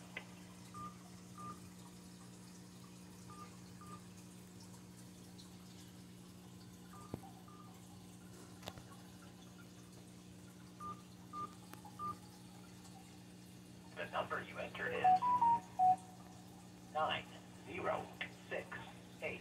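Smartphone keypad tones as an account number is keyed in to answer an automated phone menu: about nine short beeps at the same pitch, in small clusters, over a steady low hum. Brief speech follows near the end.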